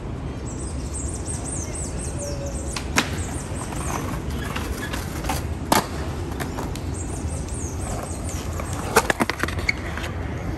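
Skateboard wheels rolling on concrete, with a few sharp clacks of the board about three seconds in, just before six seconds, and a quick cluster near the end.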